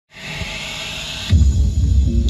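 JBL Boombox 2 portable speaker playing a bass-heavy remix of a pop song loudly: it opens with a rushing hiss, then about a second in a deep bass line drops in and dominates.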